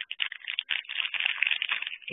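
Clear plastic packaging bag crinkling as it is handled, a quick irregular crackle.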